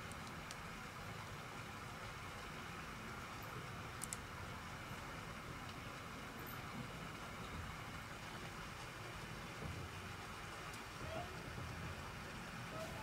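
Faint steady wind noise, with two faint clicks about four seconds in.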